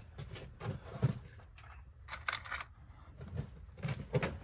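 Scattered light clicks and rattles of small things being handled, the sharpest knock about a second in and a short burst of rattling about halfway through.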